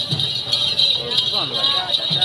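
Crowd of mourners chanting, with low rhythmic thumps about twice a second under the voices and a steady high jingling hiss.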